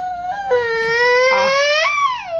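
A long, high-pitched crying wail, held through nearly two seconds; it dips in pitch early on and rises again near the end before breaking off.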